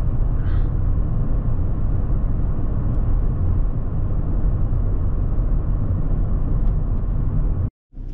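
Road and engine noise inside a moving van's cabin: a steady low rumble that cuts off suddenly near the end.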